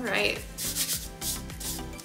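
Gloved hand stirring dry bath bomb powder (baking soda with SLSA, kaolin clay and cornstarch) in a bowl: a run of quick, repeated rubbing swishes. Background music plays underneath.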